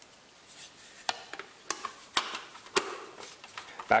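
Hard plastic back panel of a Sony ZS-RS60BT boombox being handled and closed onto its case: several sharp plastic clicks and taps, roughly half a second apart, with light rubbing of plastic between them.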